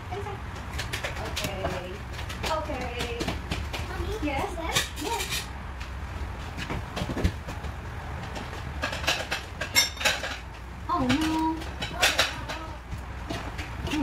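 Spoon and fork clinking and scraping against a frying pan as spaghetti is tossed, with sharp clicks that bunch up about nine to twelve seconds in.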